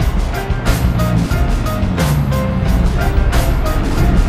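Background music with a steady beat and held electronic tones.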